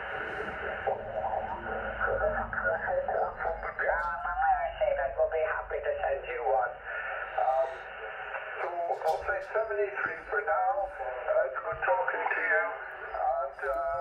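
A man's voice received over the Yaesu FT-857 transceiver's loudspeaker: thin, narrow-band single-sideband speech with a haze of radio noise under it.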